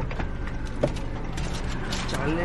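Paper wrapping of a large flower bouquet crinkling and rustling as it is handled, a run of small irregular clicks and rustles over a steady low rumble.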